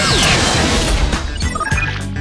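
TV promo bumper music with a crashing transition sound effect and a falling swoosh at the start.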